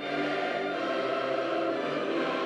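A choir singing slow, held notes over an orchestral accompaniment.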